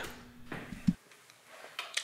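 Mostly quiet room tone broken by a few brief, faint clicks; the sharpest comes just before one second in.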